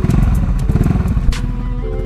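Stock exhaust of a 2012 carburetted Honda Beat scooter, its engine running with a quick, even pulse of firing strokes; the standard exhaust and standard porting are untouched. Background music takes over near the end.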